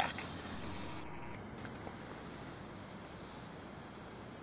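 A high-pitched insect trill runs steadily in the background as a fast, even pulsing note. It is not the filmed trig: she is a female and does not sing.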